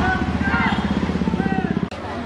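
A motorcycle engine running close by with a rapid, even putter, stopping abruptly just before the end, over a background of voices.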